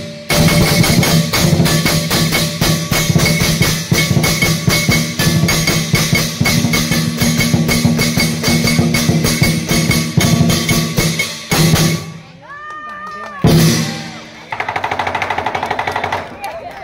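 Lion dance percussion: a big drum with clashing cymbals and gong, played in a fast steady beat, which stops abruptly about twelve seconds in. Voices follow, and then a fast drum roll starts near the end.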